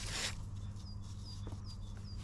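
A gloved hand briefly rustles the under-seat wiring harness at the start, followed by a few soft clicks as the cables settle. Four faint, high, falling chirps come about half a second apart in the second half, over a steady low hum.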